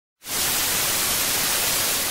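Television static sound effect: a steady, even hiss of white noise that begins a moment in.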